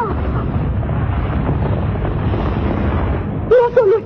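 A deep, steady rumbling sound effect, with a voice starting to speak about three and a half seconds in.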